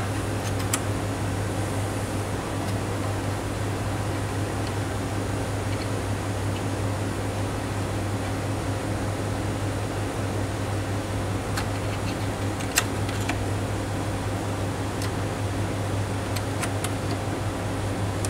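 Steady fan or air-conditioning hum with a low drone. A few faint clicks come from small screws being fitted by hand into the instrument's metal magnet gripper, the clearest about thirteen seconds in.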